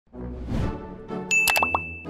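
Intro sting for an animated title logo: a short burst of music, then a bright ding about two-thirds of the way in that rings on, with a few quick pops at the same moment.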